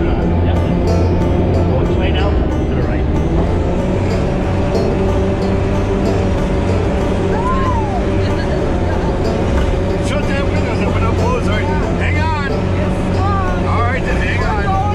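Sherp all-terrain vehicle's diesel engine running steadily under load as it drives, heard from inside the cab. Passengers' voices rise faintly over it, mostly in the last few seconds.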